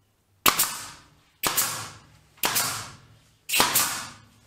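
Pneumatic nail gun firing into the corner joint of a plywood box, four shots about a second apart.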